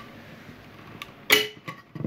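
A single sharp metallic clink with a short ring a little past halfway, from hand tools being handled at the propeller's metal hub while its screws are tightened, with a couple of lighter ticks around it.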